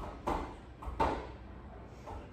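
Dumbbells being handled at a weight rack: a short scuff, then a single knock about a second in.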